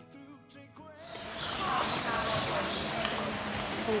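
Insects chirring in a steady, high-pitched outdoor drone, starting about a second in after a near-quiet moment.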